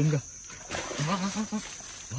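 Excited voice exclaiming during a fight with a large fish, with a short rushing noise burst about half a second in.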